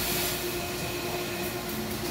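Steady hum of running machine-shop machinery, a CNC lathe and its bar feeder among it: an even whirring noise with a constant low tone running under it.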